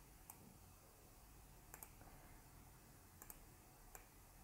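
Faint computer mouse clicks over a low room hum: a single click, two quick double clicks, and another single click near the end.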